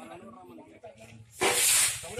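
Low voices, then a short, loud burst of hissing noise about a second and a half in, lasting about half a second.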